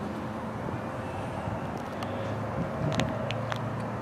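Steady low outdoor background hum with a few faint clicks about three seconds in.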